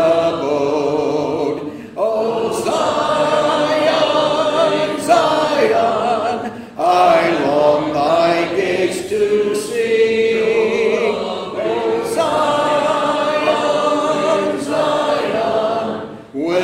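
Church congregation singing a hymn together, unaccompanied. The singing runs in sung phrases with brief breaks for breath between lines.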